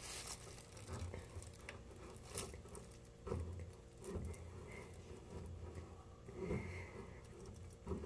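Faint handling sounds of a handheld caulking gun laying a bead of seam sealer along a floor-pan seam: scattered light clicks and rustling, with a few soft knocks.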